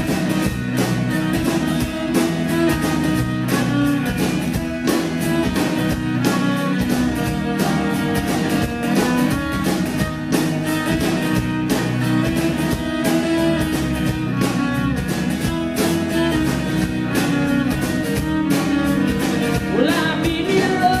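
Live folk-rock band playing an instrumental passage: bowed viola lines over electric bass, acoustic guitar and a steady drum beat.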